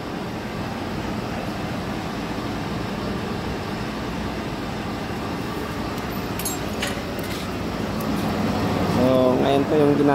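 Ford F-150's engine idling steadily, warming up after an automatic transmission oil and filter change so it can be checked for leaks. A man's voice starts near the end.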